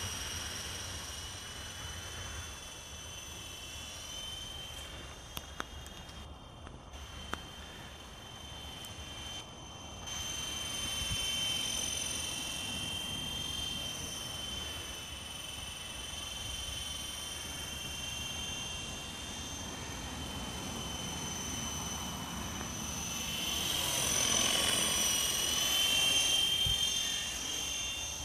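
FX 52 radio-controlled helicopter in flight: a steady high-pitched whine of its motor and rotors that wavers slightly with throttle and grows louder for a few seconds near the end.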